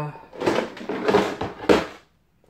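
Scrap metal being handled on the metal pan of a price-computing scale: rustling and clattering in three bursts, the loudest near the end.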